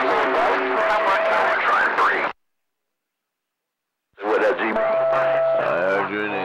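CB radio receiving skip stations: several voices garbled together under static hiss, with steady whistling tones from overlapping carriers. A little past two seconds in the audio cuts to dead silence as the squelch closes, and it reopens about four seconds in on more overlapping voices and whistles.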